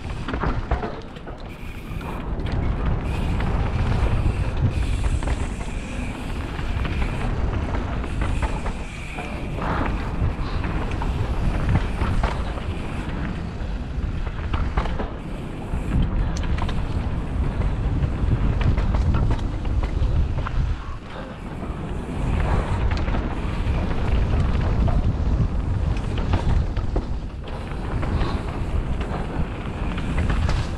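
Wind buffeting the microphone of an action camera on a fast mountain-bike descent, mixed with the rumble of bike tyres on a dirt trail. The noise swells and eases with speed and drops briefly a couple of times.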